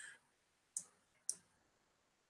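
Two sharp computer mouse clicks about half a second apart, made while drawing a trendline on a chart.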